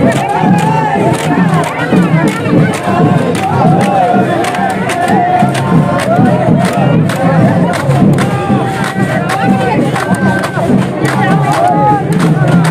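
A group of men shouting and chanting together in unison, with sticks clacking against bamboo poles in a quick, uneven rhythm, as Bihu folk music and dancing go on.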